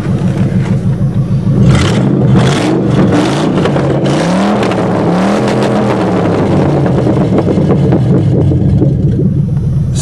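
Vehicle engine running with no exhaust system, open where the pipes were cut off at the catalytic converters. It is revved up several times between about two and five seconds in, then runs steadily.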